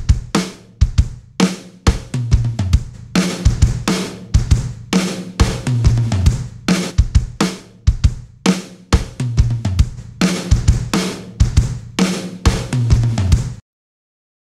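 Full drum kit recording playing a beat of kick, snare and cymbals, its room mic first dry and then, partway through, squashed hard by SSL's LMC+ Listen Mic Compressor plugin. The playback cuts off suddenly near the end.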